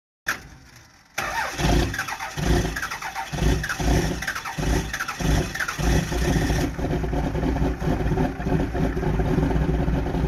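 Pickup truck's diesel engine being cranked over in even pulses about twice a second, then catching about six seconds in and running steadily while it belches black smoke.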